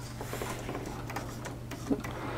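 3D-printed plastic pendulum clock ticking faintly as its coup perdu escapement steps round. A brief louder sound comes just before the end.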